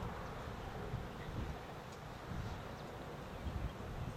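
Wind rumbling on the microphone over open-air ambience, with a few irregular low thuds.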